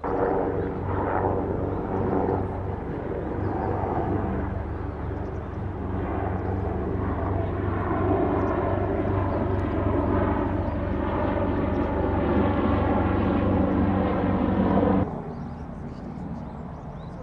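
A steady engine drone with a pitched hum, running for about fifteen seconds and cutting off suddenly near the end.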